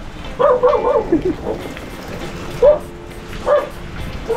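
A dog barking: a quick run of short barks about half a second in, then single barks about a second apart, over steady heavy rain.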